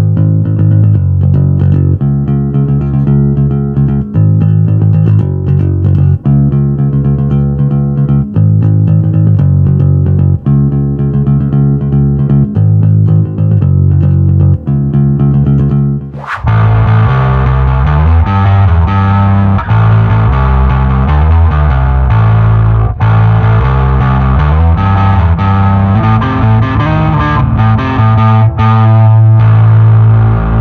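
Fender Player II Jazz Bass played through an amplifier: a repeating bass line in phrases of about two seconds. About sixteen seconds in, the sound changes abruptly to a brighter, grittier bass part that runs to the end.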